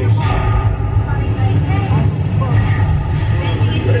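Steady low hum inside the cabin of a passenger submarine ride as it begins to dive, with faint voices over it.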